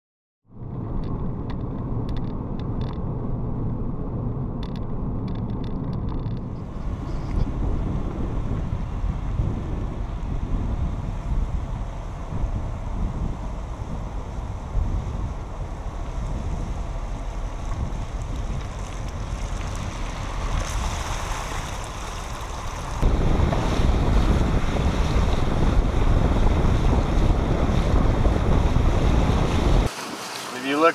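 Wind buffeting the microphone of a camera mounted on the outside of a moving car, with the tyres hissing through shallow water on the flooded salt. It gets louder about three quarters of the way through.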